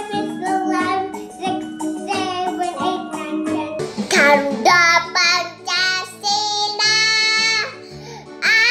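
Young children singing over accompanying music: a small boy's voice, then about four seconds in a cut to a different child, a girl, singing over her own accompaniment.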